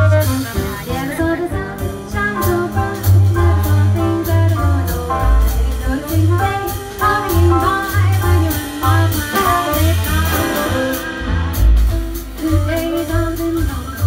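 Live jazz quartet: a woman singing into a microphone over double bass, grand piano and drum kit with cymbals.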